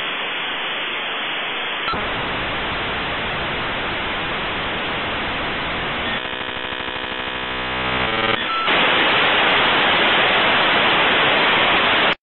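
Dial-up modem handshake: a long stretch of hissing static that changes texture about two seconds in, then a rapid stutter of tones for a couple of seconds. A louder hiss follows and cuts off suddenly at the end.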